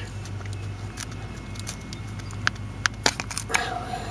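A trim panel remover prying a crankshaft position sensor out of the engine block, working it free of the O-ring that holds it in its bore. A few short, sharp metal clicks come in the second half, over a steady low hum.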